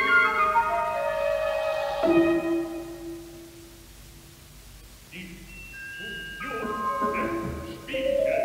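An orchestra plays opera music: held chords die away to a quiet passage about halfway through. Short, scattered high notes and sustained tones then come in and build again near the end.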